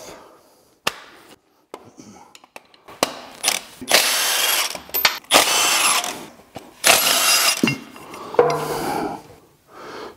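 Cordless impact wrench running in a series of short bursts, about four or five in the second half, backing out the bolts of the LT1 engine's factory motor mounts. A few light clicks come before them.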